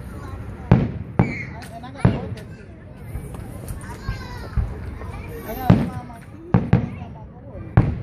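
Aerial firework shells bursting overhead, about seven sharp booms at uneven intervals, with a quieter stretch in the middle and a quick pair late on.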